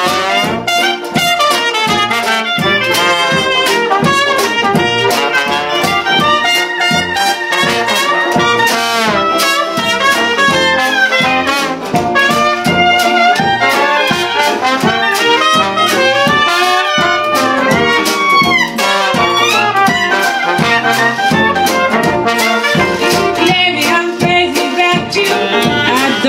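Traditional New Orleans jazz band playing, with a cornet played through a plunger mute and a trombone leading over a strummed banjo rhythm.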